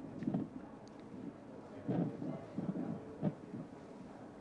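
Handheld fetal Doppler's speaker giving low, irregular whooshes and scrapes as the probe moves over the belly, with no fetal heartbeat picked up.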